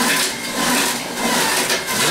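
Electric centrifugal juicer running, its motor whirring steadily under an irregular crackling grind as bok choy is pushed down the feed chute and shredded.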